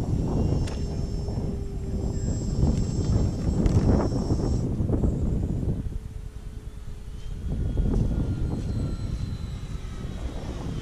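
Electric radio-controlled warbird models, an FMS F4U Corsair and an E-flite P-47, flying at a distance: their electric motors and propellers make a thin, high, steady whine that stops about halfway through, then a fainter whine that slowly falls in pitch. Under it is a heavy, gusting low rumble of wind on the microphone.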